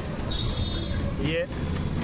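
Steady low road rumble and street traffic heard from a moving battery-powered e-rickshaw, with a brief high steady tone about half a second in.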